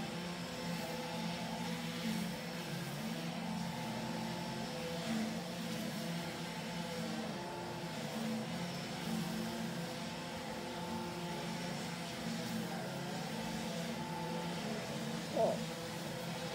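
Several two-stroke string trimmers running steadily together, their overlapping engine drones heard muffled through window glass. A brief voice-like sound comes near the end.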